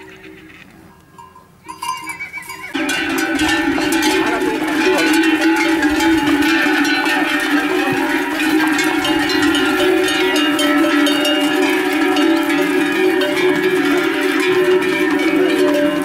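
Many livestock bells (cencerros) clanging together continuously, starting abruptly about three seconds in after a quieter start.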